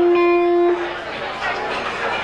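A single held electric guitar note rings steadily for about the first second and then stops, leaving audience chatter in a large hall.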